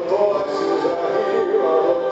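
Live synth-pop song: a male lead vocal sung into a microphone over electronic backing music.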